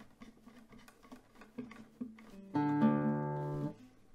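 Classical guitar: faint clicks of fingers on the strings, then a single strummed chord about two and a half seconds in that rings for about a second and is damped abruptly, as the player checks the tuning with a hand at the tuning pegs.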